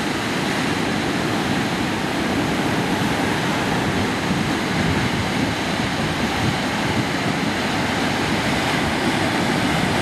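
Ocean surf: waves breaking and washing up the shore as one steady rushing noise.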